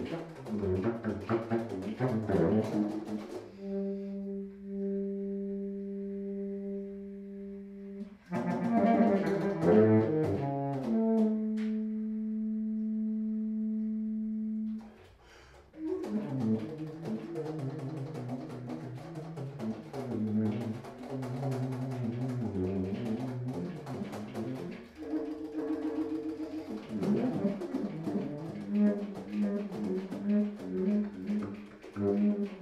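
Solo baritone saxophone playing fast, jagged runs in its low register with many sharp percussive attacks. Two long held low notes, each about four seconds, break the runs in the first half, with a brief gap just after the second.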